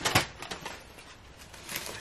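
Paper bag and foil sandwich wrapper rustling as a wrapped breakfast sandwich is taken out of the bag, with one sharp crackle just after the start and softer handling noise after it.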